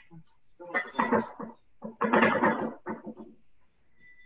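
Indistinct talking in two short bursts, words not made out, over a video call.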